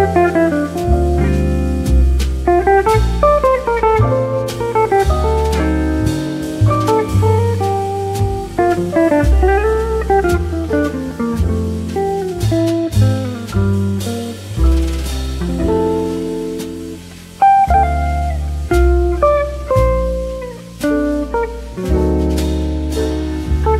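Relaxing instrumental jazz: a guitar playing quick melodic runs over low bass notes and light drums.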